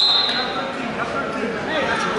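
Spectators talking and calling out in a gym, with a short high whistle-like tone at the very start that lasts about half a second.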